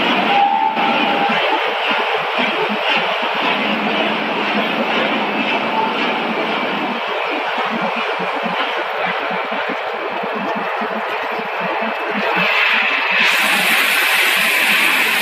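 Steady running noise of a corn curl snack production line's conveyors and machinery, with a fast, irregular rattle underneath. It gets brighter and a little louder near the end.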